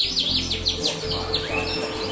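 Yorkshire canary singing: a quick run of down-sweeping chirps, then a short held whistled note.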